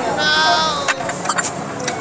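A high-pitched, wavering, drawn-out vocal sound from a person at the table, bleat-like, lasting most of the first second, followed by a few light clicks of utensils against dishes.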